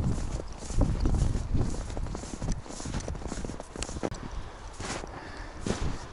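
Footsteps crunching in snow as a person walks at a steady pace, about two steps a second.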